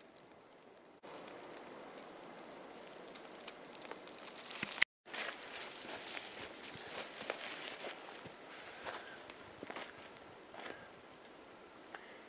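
Shuffling and crunching in dry leaf litter, with small clicks, as a person moves about and crawls into a low tarp shelter, the rustling tapering off as he settles down on the leaves.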